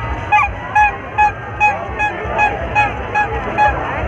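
A short honking note at the same pitch each time, repeated about two and a half times a second, over the hubbub of a crowd.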